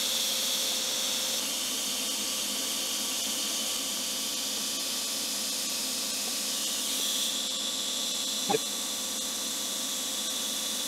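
TIG welding arc on stainless steel exhaust tubing: a steady high-pitched hiss with a faint hum under it. Its tone shifts slightly a couple of times, and a brief falling chirp comes near the end.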